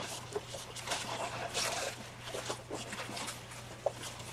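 Crumpled brown packing paper rustling and crinkling as it is pulled out of a cardboard box, with a few small knocks and a sharp click near the end.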